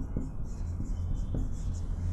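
Felt-tip marker writing on a whiteboard: short, faint scratchy strokes with a few light taps of the tip, over a steady low hum.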